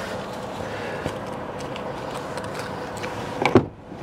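Lorry cab door being unlatched and pulled open, with a sharp loud clunk near the end, over a steady hum with a few small clicks.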